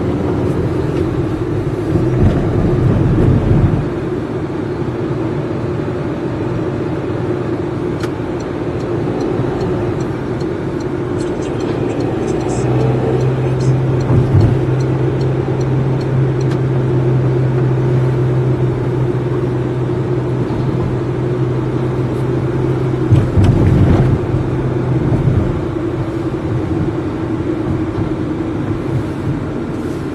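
Steady engine and road noise of a car driving in traffic, heard from inside the cabin. A low hum holds steady through the middle stretch.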